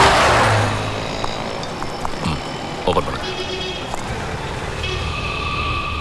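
Street traffic: a vehicle rushes past at the start, then car horns sound, with a long steady horn note near the end.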